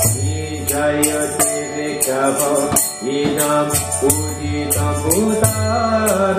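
A man leading a devotional mantra chant into a microphone, his voice gliding between held notes over a steady low drone, with bright metallic percussion strokes about two or three times a second.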